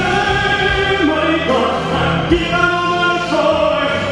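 Baritone male singer singing long held notes over backing music, his voice stepping from note to note between phrases.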